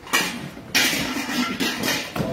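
Rustling and clattering of unpacking: plastic wrap and cardboard being handled. A brief burst comes right at the start, and a louder, steady rush of noise begins just under a second in.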